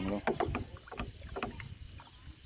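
A hand stirring pesticide solution inside an open plastic sprayer tank: irregular small splashes and sloshing of the liquid.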